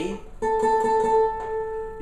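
Custom OME tenor banjo with a 12-inch head: a single D7 chord strummed about half a second in and left to ring, fading slowly.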